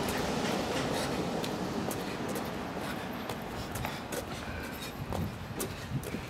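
Sneakers tapping lightly on a concrete driveway in a run of quick small hops, over a steady rushing background noise.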